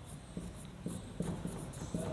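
Marker pen writing on a whiteboard, in short irregular strokes of the tip.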